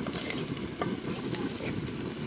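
Chopped onion, garlic and green chillies sizzling in oil in a large iron wok, stirred with a flat metal spatula that scrapes and taps the pan with scattered sharp clicks.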